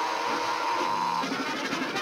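Orchestral cartoon score: a held high note breaks off a little over a second in, and the music moves on to a new phrase.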